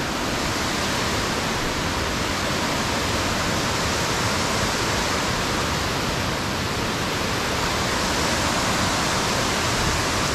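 A cascading mountain creek: water rushing steadily over rock ledges and slabs in a loud, even roar.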